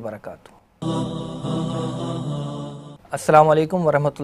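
A short music sting, a single held voice-like note about two seconds long that cuts off suddenly, framed by a man's speech just before and just after.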